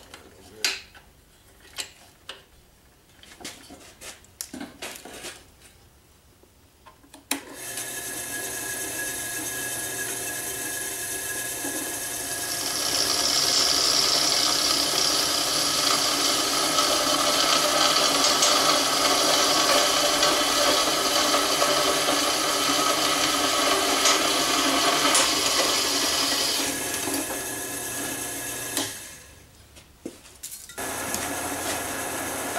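A few handling knocks and clicks, then a benchtop drill press motor switches on about seven seconds in and runs steadily. From about twelve seconds in the bit is fed into metal and a louder, higher-pitched cutting noise rides over the motor for some fourteen seconds; then the motor runs on unloaded and shuts off near the end.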